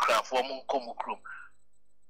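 A man speaking in short phrases that trail off about a second and a half in, followed by a brief pause.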